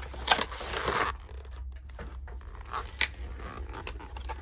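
A cardboard collector box being opened and its clear plastic blister tray lifted out: a burst of scraping and crinkling in the first second, then quieter plastic handling with a sharp click about three seconds in.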